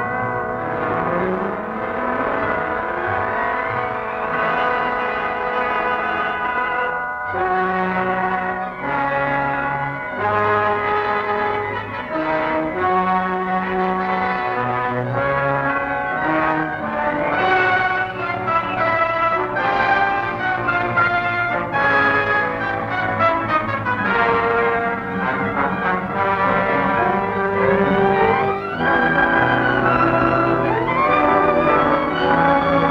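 Orchestral title music led by brass, playing continuously, with rising runs in the first few seconds.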